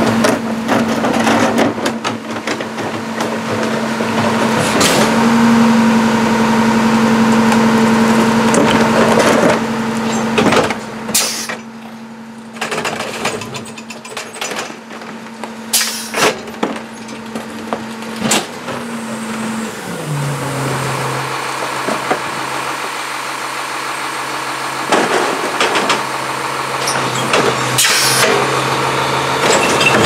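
CCC integrated rear-loader garbage truck running its hydraulic packer cycle, with the engine held at raised revs and metal clanks from the packer blade. About twenty seconds in, the engine drops to idle. Near the end there is more clanking as a cart is tipped into the hopper.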